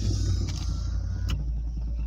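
Car engine idling, heard from inside the cabin as a steady low hum, with a couple of light clicks.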